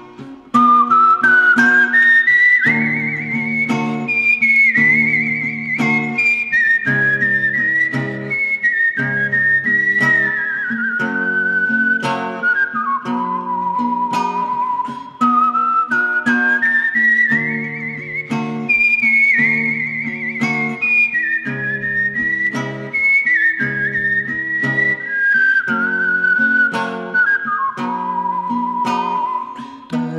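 Acoustic guitar picking a steady repeating accompaniment under a whistled melody. The tune slides up high, then steps back down over about fifteen seconds, and the phrase is played twice.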